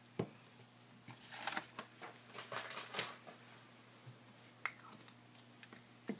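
Soft rustling and a few light taps of paper being handled and pressed flat on a tabletop as a freshly glued flap is smoothed down.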